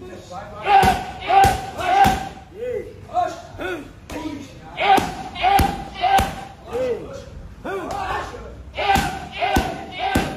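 Punches and kicks landing on leather Thai pads in fast combinations of three, about 0.6 s apart, three times over. Each strike comes with a short, sharp vocal call.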